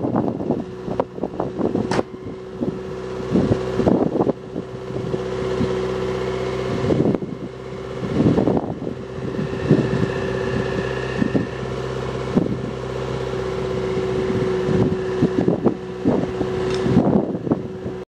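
Wind buffeting the microphone in irregular gusts over a steady mechanical hum made of several held tones, like a machine or engine running nearby.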